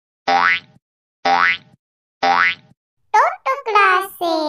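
A cartoon 'boing' sound effect with a rising pitch plays three times, about a second apart. About three seconds in, a voice starts speaking.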